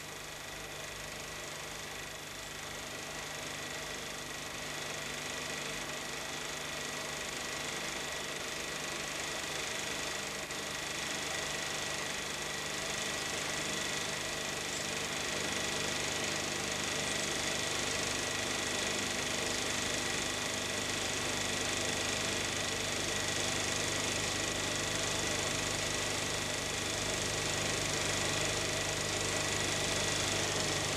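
Steady hiss with a low hum and a thin high steady tone, growing slowly a little louder, with no distinct sounds: the background noise of an old recording under silent film footage.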